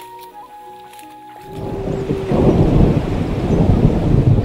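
Soft background music with held tones, then about a second and a half in a loud, low, crackling rumble swells up and carries on over it.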